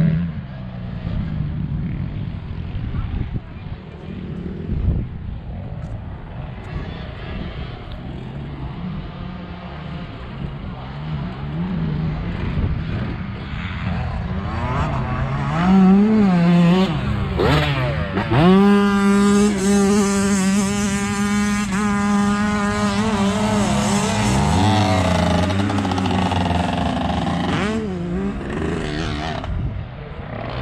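Motocross dirt bike engines running on the track, the revs rising and falling, then one engine held at a steady high pitch for several seconds past the middle before dropping away.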